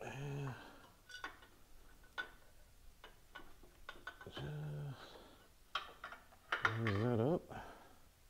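Light metallic clicks and clinks as a Harley-Davidson front rocker housing is worked free and lifted off the cylinder head. Three short wordless vocal sounds from the mechanic come near the start, about halfway and about seven seconds in, the last one wavering in pitch.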